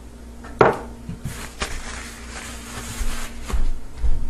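Kitchen handling noise while a lobster tail is being seasoned. A dish or container knocks sharply on the counter, the loudest sound, about half a second in. Then comes a couple of seconds of rustling and scraping with a few light clicks.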